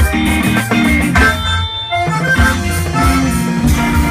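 Live band playing an instrumental passage with accordion, electric guitar, bass guitar, drum kit and hand percussion. About a second and a half in, the bass and drums drop out for half a second in a short break, then the full band comes back in.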